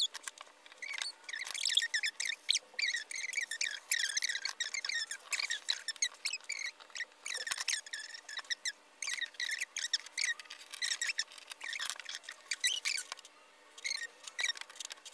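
A squeaky chair squeaking over and over in short chirps as the seated person shifts and leans while working. Light clicks of metal washers are set down on fabric as pattern weights.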